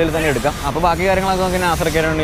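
A man speaking, with no other sound standing out.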